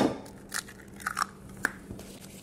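An egg cracked sharply on the rim of an enamelware bowl, followed by a few small clicks and crackles as the shell is broken open and the egg drops into powdered sugar.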